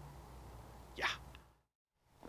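Faint low rumble of wind on the microphone, with a short, breathy "yeah" from a man about a second in. The sound then cuts out completely at an edit near the end.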